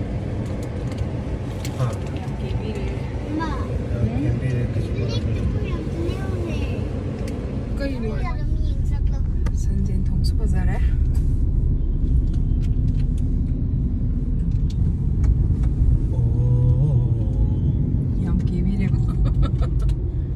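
Car driving in slow traffic, heard from inside the cabin: a steady low rumble of engine and road noise, with voices talking over it at times.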